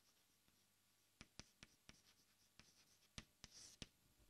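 Chalk writing on a blackboard, very faint: a string of light taps and ticks as letters are formed, with a short scrape near the end.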